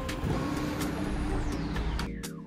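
Street traffic noise, a steady rumble of passing vehicles, with a falling whistle in the second half.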